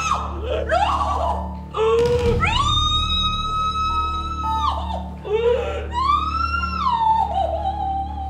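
A woman's long wailing cries of grief, each sliding up, holding, then falling, over a low sustained music drone from the score.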